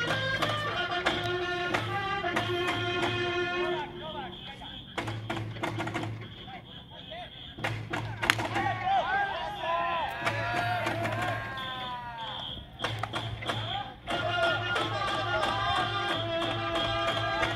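Baseball cheering section: an electronic whistle plays a cheer tune over a steady taiko drum beat. In a break in the middle there are short high whistle blasts, sliding tones and voices, and then the tune and drum start again near the end.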